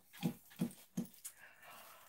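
A dog whimpering softly: a few short, quiet whines about three a second.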